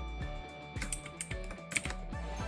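Computer keyboard and mouse clicking, several separate clicks, over faint steady background music.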